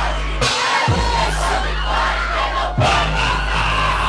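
Brazilian funk (baile funk) track played loud over a sound system, with a heavy bass and a crowd shouting and singing along. The bass drops out briefly about half a second in, then the beat comes back.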